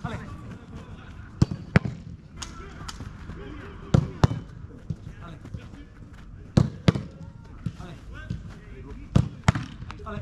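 Footballs being kicked in close-range shooting drills: four pairs of sharp thuds about two to three seconds apart, each kick followed a fraction of a second later by a second thud as the ball is met by the goalkeeper or lands, with one lone thud between the first two pairs. Faint voices can be heard between the thuds.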